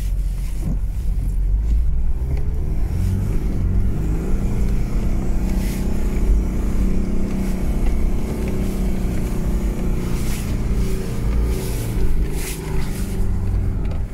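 Mitsubishi Pajero's 2.8-litre turbo-diesel engine working hard under load as the vehicle ploughs through deep snow on unstudded tyres, heard from inside the cabin; the revs climb and hold through the middle. A few brief noises cut across the engine sound.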